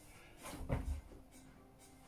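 A muffled thump less than a second in, as a man lands hands and feet on a rubber exercise mat, jumping down into a plank during down-ups.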